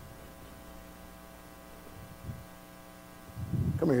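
Low, steady electrical mains hum from the recording or sound system, with a soft knock about two seconds in. A man's voice calls out near the end.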